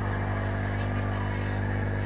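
A steady low hum with a buzz, unchanging throughout.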